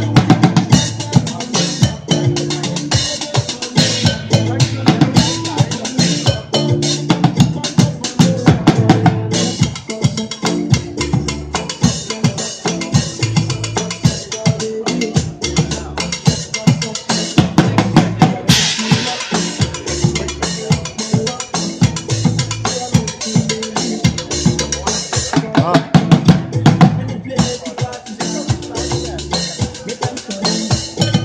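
Bucket drumming: drumsticks beating a fast, dense rhythm on upturned plastic buckets, metal pots and small cymbals, the deep hollow bucket hits under sharper rim and pot strikes. A bright crash rings out about two-thirds of the way through.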